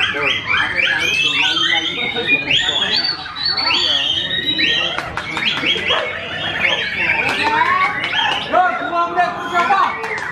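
White-rumped shama (murai batu) singing a fast, unbroken stream of quick up-slurred whistles and chirps, with voices murmuring behind.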